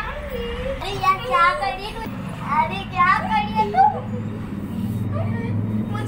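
Girls' high-pitched voices calling out and chattering playfully, strongest in the middle, followed by a steady low hum near the end.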